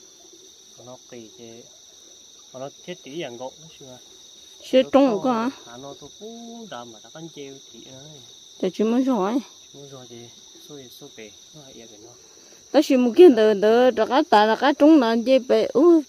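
A steady, high-pitched insect chorus drones in the background as two unbroken tones, the lower one dropping out about twelve seconds in, under bursts of nearby speech.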